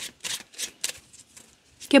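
A deck of cards being shuffled by hand: a quick run of short papery snaps, strongest in the first second and fainter after that.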